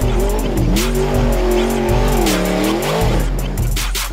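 Sprintcar's 410 cubic-inch methanol-burning V8 revving hard, its pitch dipping and climbing twice as the throttle is lifted and reapplied, then dropping off near the end.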